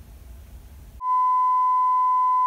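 Faint low hum, then about halfway through a steady high-pitched test-tone beep starts suddenly: the reference tone that goes with television colour bars.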